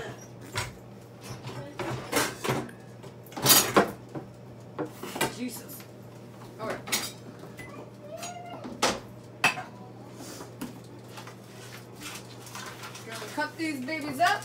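Clatter of kitchenware being handled: a lower cabinet opened, pans knocked about and a plastic cutting board set down on a gas stovetop, a run of sharp knocks and clanks.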